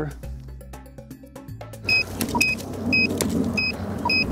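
Short, high electronic beeps from a handheld device, about two a second, starting about halfway through over a steady hiss. Background music fills the first half.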